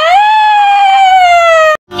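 A person's long, loud, high-pitched scream that rises at the start, then slowly sinks in pitch, and cuts off abruptly near the end.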